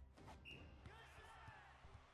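Near silence, with the anime's audio faint underneath: a few soft ball thuds and distant voices.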